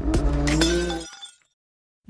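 The tail of a logo-ident sound effect: a held musical tone struck by a few sharp hits, dying away about a second in.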